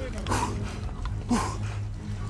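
A man gasping for breath with his face just above the water, two hard breaths about a second apart over a low steady hum. He is recovering his breathing after a long breath-hold underwater.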